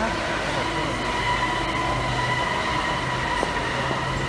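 A London black cab pulling in, with a steady high-pitched whine held over the traffic noise.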